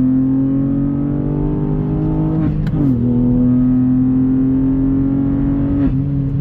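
Stage 2 tuned Ford Fiesta ST Mk8's turbocharged 1.5-litre three-cylinder engine accelerating hard, heard from inside the cabin. Its pitch climbs steadily and drops sharply at an upshift about two and a half seconds in, with a short sharp noise at the shift. It climbs again and drops at another upshift near the end.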